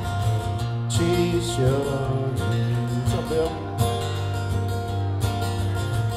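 Two acoustic guitars strummed together through a PA, playing the instrumental opening of a folk song in a steady rhythm.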